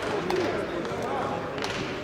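Voices talking in a large, echoing sports hall, with a few sharp knocks, the clearest about one and a half seconds in.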